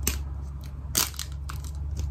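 Hard plastic capsule ball of a blind-box toy being gripped and pried at by hand, its plastic clicking and creaking a few times, loudest about a second in. A steady low hum runs underneath.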